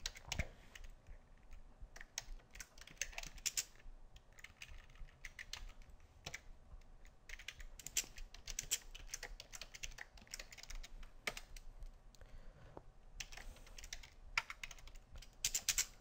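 Typing on a computer keyboard: clusters of keystrokes in short bursts, with brief pauses between them.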